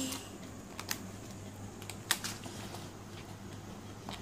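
Light taps and clicks of picture books and a cardboard box being handled, with a few sharp clicks about one and two seconds in.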